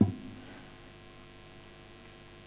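Steady electrical mains hum picked up through the lectern microphones and sound system, with a brief low thump right at the start.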